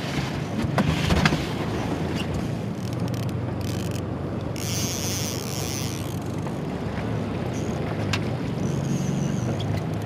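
Boat motor running steadily at low speed under wind on the microphone and the wash of a choppy sea, with a few light clicks in the first second and a brief rush of hiss about halfway through.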